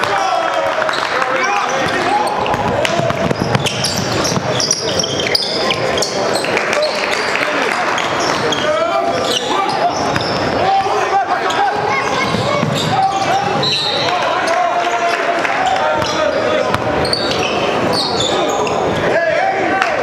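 A basketball being dribbled on a hardwood gym floor, with voices of players and spectators in a large gym.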